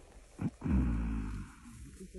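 Silverback gorilla giving one low, rough grunt lasting under a second, just after a short knock.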